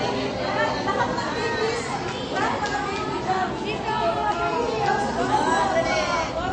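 Chatter: several people talking at once, their voices overlapping without a break.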